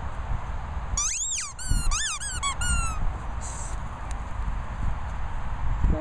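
A dog's squeaky toy squeaked about six times in quick succession as a Cairn Terrier chews it, starting about a second in. The first squeak is the longest and the rest are short.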